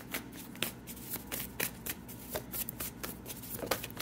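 A tarot deck being shuffled by hand: a run of irregular card clicks and flicks, roughly three a second.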